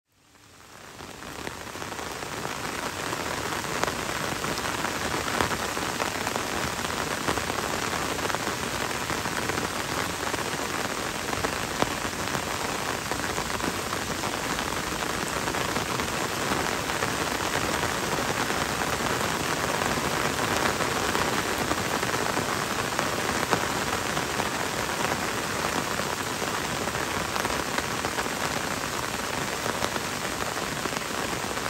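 Steady gentle rain, fading in from silence over the first two seconds, with a few single drops standing out now and then.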